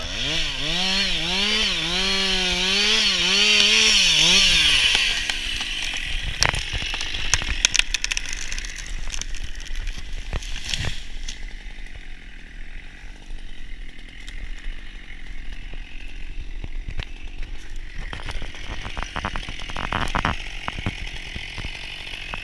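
Chainsaw cutting into a spruce trunk under load, its engine pitch wavering, for about five seconds before the revs fall away. Then come several sharp cracks and crashes as the tree breaks off and falls.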